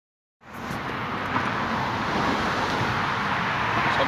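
A steady rushing background noise that starts suddenly just under half a second in and holds even, with no clear tones or distinct events.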